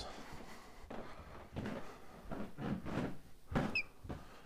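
Scattered knocks, bumps and shuffles of someone clambering over furniture to reach something, with a short high chirp from a pet bird near the end.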